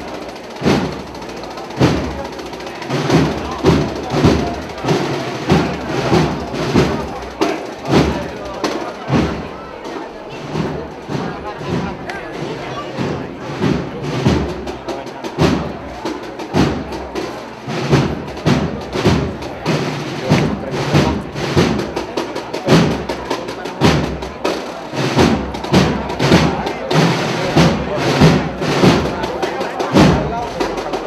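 Processional band music with drums keeping a steady march beat, about two beats a second.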